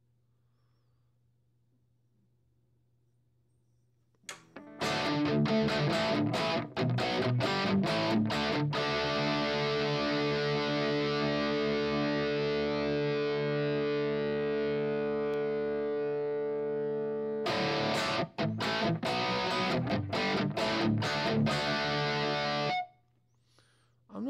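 Distorted electric guitar played through a Headrush modeler's Revalver amp model of a Peavey Valve King into a simulated angled 4x12 cab. After about four seconds of near silence with a faint hum, chords are struck, one chord is left to ring for several seconds, then a few more chords follow before the playing stops abruptly near the end.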